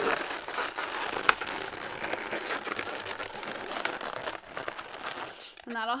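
Inflated latex twisting balloons rubbing and crinkling against each other as they are squeezed and twisted by hand, with a sharp click about a second in.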